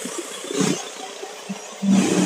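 Roadside street noise: a low background of traffic with a few short, irregular knocks and bumps.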